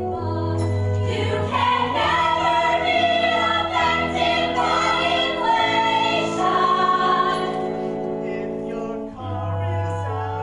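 Ensemble of mixed voices singing a show tune in chorus, with long held notes, fullest in the middle and thinning out near the end.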